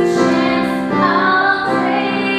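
A woman singing over piano accompaniment, her voice wavering on a held note in the second half.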